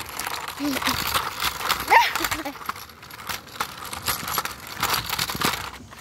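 Rustling, crackling handling noise from a phone's microphone as fingers shift and rub on the handheld phone, with a child's brief rising vocal sound about two seconds in.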